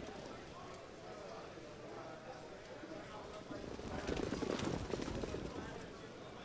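Hoofbeats of a trotting harness horse on the dirt track, growing louder about four seconds in, under faint background voices.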